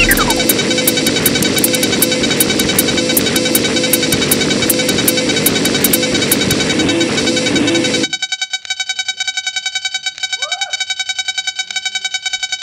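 Electronic dance music played live on a Eurorack modular synthesizer rig: dense synth layers over fast hi-hat-like ticks, with a falling pitch sweep at the start. About eight seconds in, the bass drops out, leaving a pulsing high sequence and a brief rising sweep.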